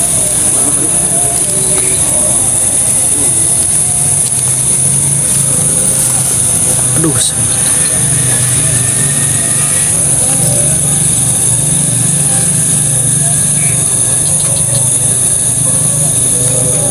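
Steady outdoor night background: a constant high-pitched drone over a low hum, with quiet voices and one word spoken about halfway through.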